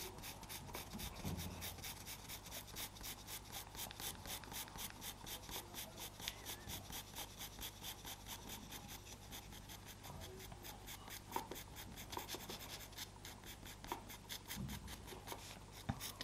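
Pastel pencil scratching on Pastelmat paper in quick, short shading strokes, about six a second, faint and even.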